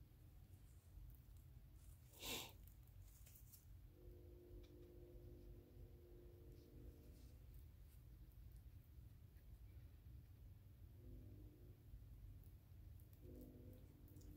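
Near silence: the faint rustle of gold holographic nail foil being smoothed down onto a glued rock with a soft-tipped tool, with one brief louder crinkle about two seconds in.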